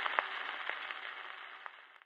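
Surface noise of a 78 rpm shellac record after the music has ended: a steady hiss with scattered sharp clicks, fading out near the end.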